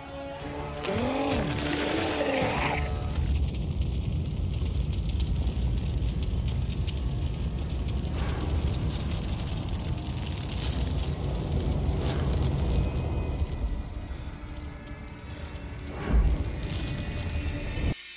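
Television battle-scene soundtrack: music over dense, rumbling battle noise, with a wavering shriek about one to two seconds in and a heavy boom near the end.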